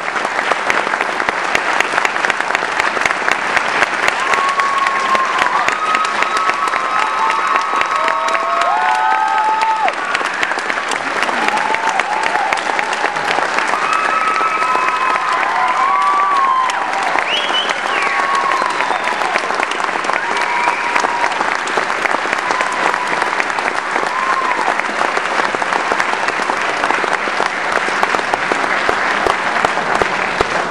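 Audience applauding steadily, with scattered voices calling out over the clapping through the middle stretch.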